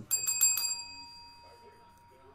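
A small metal bell struck about five times in quick succession, its ringing tone fading away over about a second and a half.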